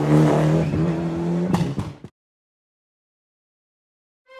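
Ford Fiesta Proto rally car's engine running hard at a steady pitch as it drives away on gravel, with a few sharp cracks near the middle. The sound then fades and cuts off suddenly into silence about halfway through.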